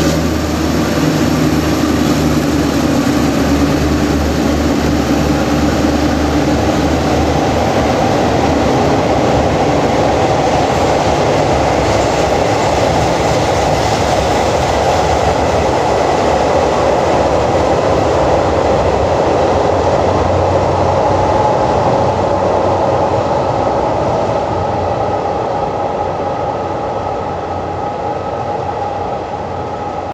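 Passenger coaches of a departing diesel-hauled train rolling past on the rails, a steady rumble of wheels on track that fades over the last several seconds as the train pulls away.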